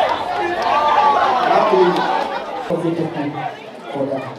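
A crowd of wedding guests talking over one another in unintelligible chatter, with one high voice carrying over the others in the first two seconds.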